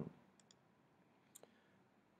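Near silence with a few faint computer mouse clicks: two close together about half a second in, and another about a second later.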